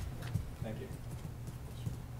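Steady low hum from a noisy room microphone, with faint voices in the background and a few light clicks near the start.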